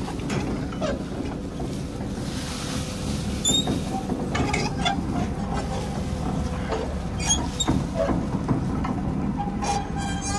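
A tractor-drawn feed wagon running steadily as it feeds out, its cross conveyor discharging chopped silage onto the grass. A few short high-pitched sounds come in over the steady machine noise.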